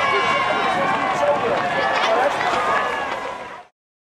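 Roadside crowd of spectators shouting and cheering, many voices at once. The sound fades out quickly about three and a half seconds in.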